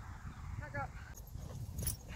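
Wind rumbling on the microphone in an open field, with one short vocal sound from a woman about half a second in and a sharp click near the end.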